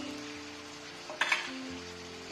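Chicken pieces frying in plenty of hot oil in an enamelled steel pan, with a steady sizzle. A metal skimmer clinks once against the pan a little past the middle.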